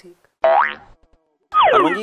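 A cartoon-style sliding sound effect: a short pitched tone that glides upward about half a second in, then after a brief silence another that slides steeply downward near the end.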